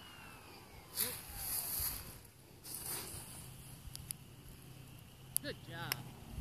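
Electric motor of a radio-controlled flying wing running on a 4S battery, its whine falling away in pitch as it comes in low to land, followed by two short rushes of noise about a second and about three seconds in.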